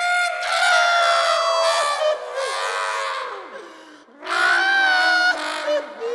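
A cartoon character's voice letting out two long, loud, held cries, the first running about two seconds and the second about a second, each slightly falling in pitch.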